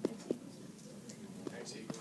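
Faint voices answering quietly in a classroom, with a few soft taps.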